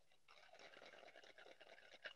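Near silence, with only a faint hiss.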